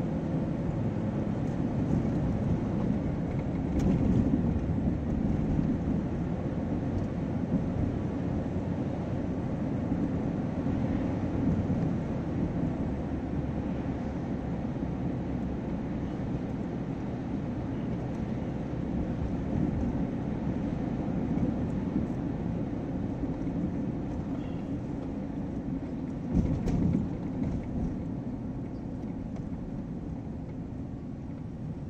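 Steady low road and engine rumble heard from inside a moving car's cabin, with a brief louder bump near the end.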